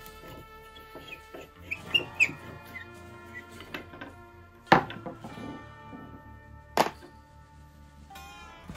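Background music over a screwdriver backing out the front-knob screw of an old Stanley Bailey No. 27 wooden-bodied jack plane. Short high squeaks come about two seconds in, then two sharp knocks about five and seven seconds in.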